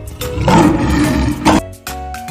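A lion roar sound effect lasting about a second and a half, over children's background music.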